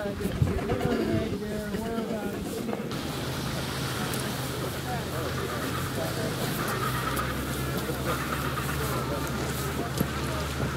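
Adélie penguin colony calling, many overlapping voices. About three seconds in the sound changes abruptly to a denser, more distant colony din over a steady low hum.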